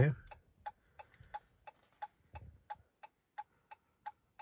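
Car hazard-light flasher clicking steadily, about three faint ticks a second.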